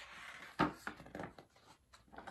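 Pages of a paperback picture book being turned: a rustle of paper, a soft thump about half a second in, then a few small clicks and rustles.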